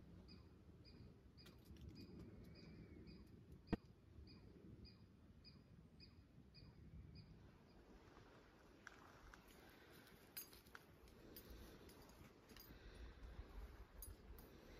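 Near silence, with a faint high chirp repeating evenly about three times a second through the first half and a single sharp click a little under four seconds in.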